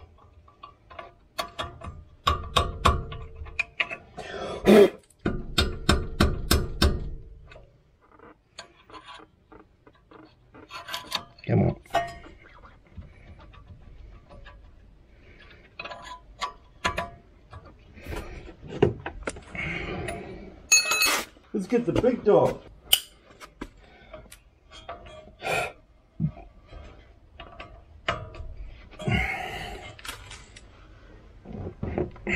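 A socket ratchet clicking in quick runs and steel tools clinking against a brake caliper while its mounting bolts are tightened. A man's voice grunts or hums now and then.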